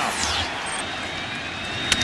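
Steady stadium crowd noise heard through a TV broadcast, with the single sharp crack of a bat hitting the ball just before the end.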